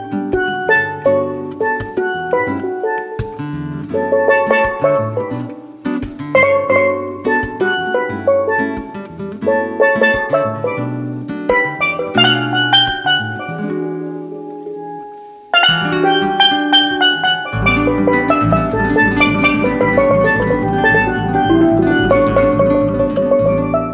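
Steel pan playing a melody over acoustic guitar accompaniment. About two-thirds of the way in, the music thins out and fades, then comes back suddenly at full level with the guitar strumming a busy, steady rhythm.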